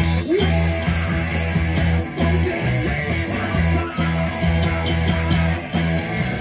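Live rock band playing a heavy riff: electric guitar and bass guitar holding long low notes over drums.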